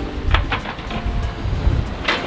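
Wind buffeting the microphone in gusty low rumbles, over faint background music.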